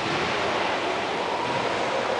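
Steady, even rushing background noise of a large gym hall, with no racket hits or shuttlecock strikes standing out.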